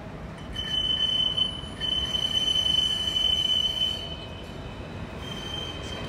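Alstom Citadis 302 tram's wheels squealing on curved track: one high, steady squeal starting about half a second in and fading after about four seconds, then returning faintly near the end, over the low rumble of the running tram.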